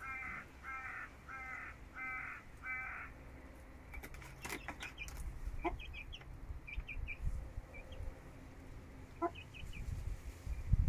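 A harsh bird call repeated about six times, roughly two a second, over the first three seconds. From about halfway on, chicks peep in short high cheeps here and there.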